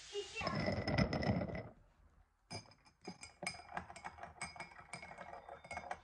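A girl laughs briefly at the start. After a short pause, a spoon clinks rapidly and repeatedly against a glass tea mug as the tea is stirred, each clink ringing briefly.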